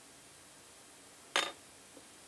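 A single sharp metallic clink from small hand tools, as tweezers are set aside and a screwdriver is taken up while screws are fitted to the kit's case, a little over a second in, with a brief ring.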